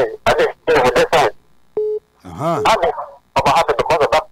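Voices over a phone-in line, broken about two seconds in by a short, steady telephone beep, then a drawn-out voiced sound that rises and falls in pitch before the talk resumes.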